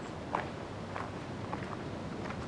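Footsteps of two people walking, a few separate steps at roughly two a second over a steady background hiss.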